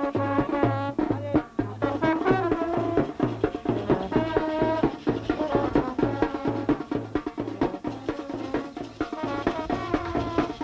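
Lively Indian-style brass band music: wavering brass melody over a quick, steady drum beat.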